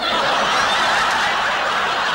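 A large group of people laughing together: a wave of laughter that breaks out suddenly and holds steady.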